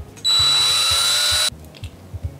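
A small power drill boring into a bar of soap: one loud burst of about a second and a quarter that starts and cuts off abruptly, a steady high whine over a lower motor tone that rises slightly in pitch.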